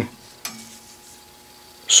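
A pause in a man's speech: faint steady room hiss with one small click about half a second in, and his voice starting again right at the end.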